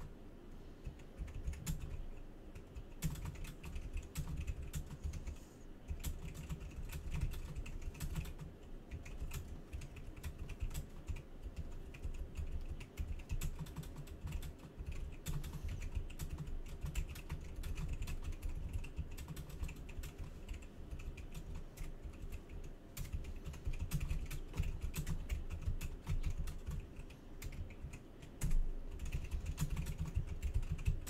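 Rapid, irregular clicking and tapping, with low thumps underneath.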